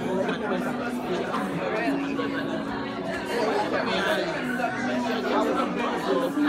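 Room full of people chatting, with a RAV Vast Kurd-scale steel tongue drum being struck with mallets underneath: slow, low notes that ring on and give way to one another every second or two.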